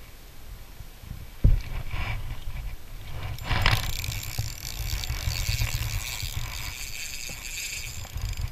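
Wind rumbling on the microphone while a spinning reel is handled: a sharp knock about a second and a half in, then a click just before the middle followed by a steady hiss.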